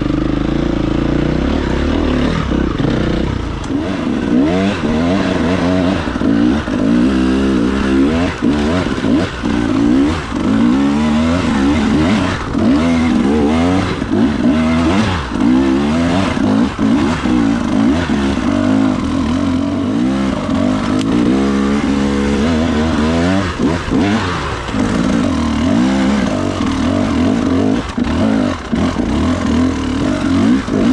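Enduro dirt bike engine revving up and down over and over as it is worked under load on a rocky climb, its pitch rising and falling every second or two.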